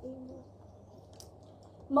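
A woman's short, low hummed "mm" at the very start, then a quiet room with a faint click about a second in; she starts speaking again right at the end.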